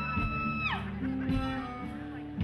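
Live string-band music with plucked guitar over steady low notes. A high held note slides down and ends about three-quarters of a second in, and the picking carries on.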